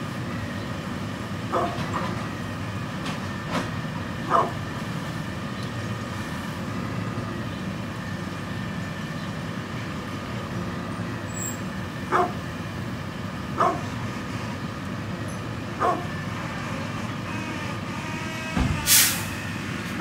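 A brindle pit bull giving a handful of short single barks, spaced several seconds apart, over a steady background rumble. Near the end comes a loud hiss lasting about half a second.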